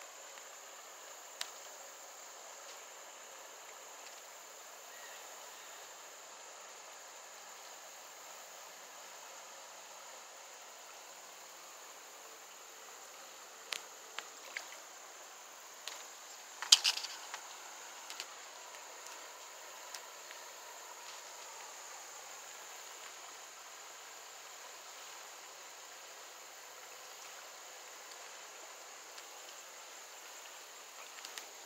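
A steady, high-pitched insect chorus, like crickets, runs on faintly throughout. It is broken by a few sharp clicks and knocks, the loudest about seventeen seconds in, from handling close to the microphone.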